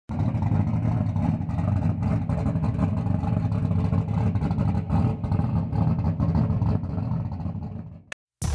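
Race car engines running hard at high revs, a loud, dense engine sound that fades out near the end.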